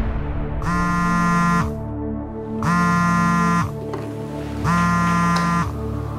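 Smartphone on a wooden table buzzing for an incoming call: three one-second buzzes about a second apart, each sliding briefly in pitch as it starts and stops.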